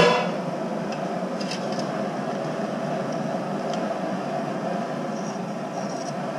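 A metal strainer basket clanks once against the stockpot. Then comes the steady rushing of a propane fryer burner under a pot at a rolling boil.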